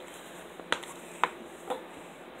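Three short, sharp clicks about half a second apart over faint room hiss.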